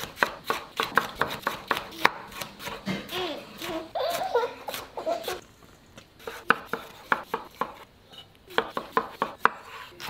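Chef's knife chopping red capsicum and snow peas on a wooden chopping board: quick runs of sharp knife strikes on the board, with a break in the middle.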